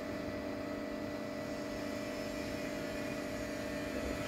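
Household electric water-pump motor, switched on by its automatic control, running with a steady hum.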